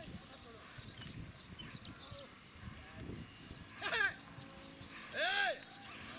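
Two loud shouted calls from handlers urging a pair of Ongole bulls, each rising and falling in pitch, about four and five seconds in. Underneath is a steady low scraping and rumble from the stone block the bulls drag over gravel, with their hooves and the handlers' footsteps.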